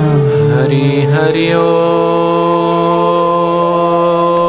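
A man singing a Hindi devotional bhajan: a short ornamented phrase with pitch turns, then one long held note from about a second and a half in.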